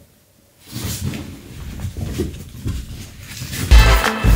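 Rustling and shuffling of black fabric bags being handled and packed. Just before the end, music with a heavy bass beat starts abruptly and is the loudest thing.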